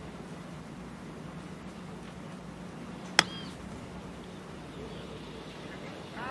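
A golf wedge strikes the ball on a chip shot: one sharp, clean click about three seconds in. The ball was sitting up on paspalum grass. A brief high chirp follows just after, over a low steady background hum.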